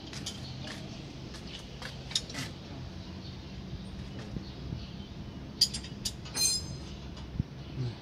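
A steady low machine hum with scattered sharp metallic clicks, and a short run of louder, ringing metal clinks between about five and a half and seven seconds in.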